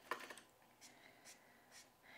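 Faint scratching of a Copic alcohol marker nib stroking across white cardstock while colouring: a slightly louder stroke right at the start, then a few faint short strokes about half a second apart, near silence between them.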